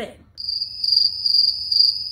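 Cricket chirping as a comedic 'crickets' sound effect: one steady, high trill that starts about a third of a second in and holds without a break.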